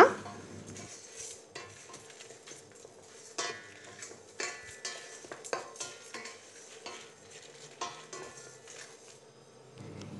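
Wooden spatula stirring whole spices (coriander seeds, cumin, dried red chillies) as they dry-roast in a stainless steel pot: quiet, irregular scraping with seeds rattling against the steel.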